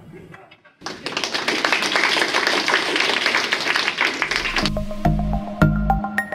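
Audience applauding in a lecture room, starting about a second in and running for about four seconds. Near the end it gives way to outro music with a regular deep bass beat and bright ringing tones.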